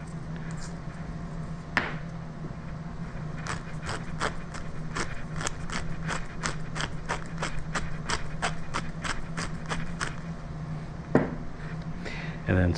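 Wooden pepper mill being twisted to grind pepper: a long run of regular crunching clicks, about three a second, lasting some six seconds. There is a single click before it and a knock near the end.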